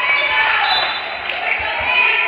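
Echoing gymnasium noise during a basketball game: overlapping voices of players and spectators, with a basketball bouncing on the hardwood floor.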